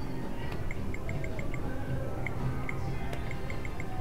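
Video poker machine's short high electronic beeps, coming in quick runs of several, as a hand of cards is dealt and drawn, over a steady background din of casino noise.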